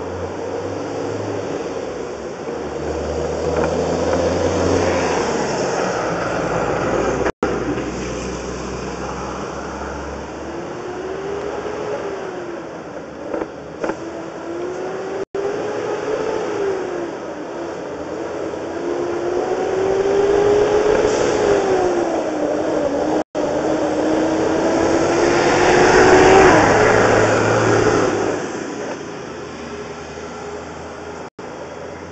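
An engine or motor running, with a whine that rises and falls in pitch through the middle, growing loudest a few seconds before the end. The sound drops out completely for an instant three times.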